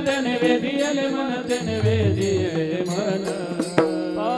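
Warkari kirtan devotional singing: a voice holding and bending long sung notes, with one sharp stroke of hand cymbals (tal) near the end.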